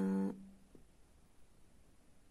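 A woman's voice holding the last syllable of a word for about a third of a second at the start, then near silence: room tone.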